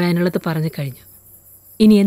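Spoken dialogue in the first second and again near the end, over a steady faint chirring of crickets in the background.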